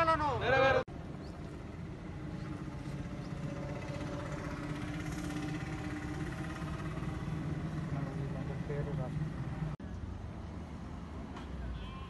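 A man's raised voice for about the first second, then after a cut a steady outdoor background noise with a faint low hum running under it.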